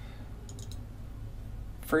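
A few faint computer mouse clicks in quick succession about half a second in, over a low steady hum. A man's voice starts speaking at the very end.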